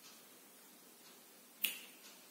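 A single sharp click about one and a half seconds in, a tap of the drawing tools against a whiteboard, over faint room tone.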